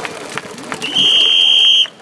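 Crowd chatter in the stands, then about a second in one loud, steady, high whistle blast lasting about a second, from a cheer leader's whistle calling the fans into a cheer.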